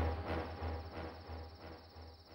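Crickets trilling steadily at a high pitch, faintly, under a low rhythmic throb that dies away.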